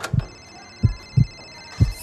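Heartbeat sound effect: slow, deep thumps in lub-dub pairs about once a second, under a steady high-pitched ringing tone.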